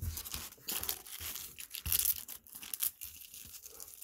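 Foil-wrapped baseball card pack crinkling and tearing in the hands as it is picked up and ripped open, with irregular crackles that are loudest in the middle.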